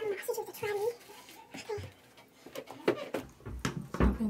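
A voice talking indistinctly for about the first second, then a few sharp knocks and rubbing right at the microphone as the phone is handled near the end.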